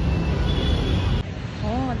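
Low rumble of street traffic and motorbikes that cuts off abruptly a little after a second in; a voice then says "oh" near the end.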